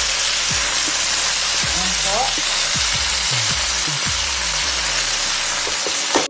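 Eggplant strips sizzling loudly in hot oil in a stainless steel pot, with a steady frying hiss, as they are stirred in among sautéed garlic, onion and ginger.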